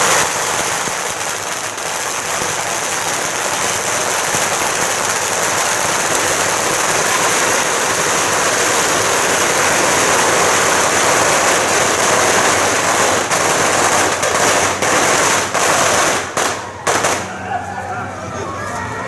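A long string of firecrackers going off in a dense, continuous crackle. About sixteen seconds in it breaks into a few separate bursts and dies out.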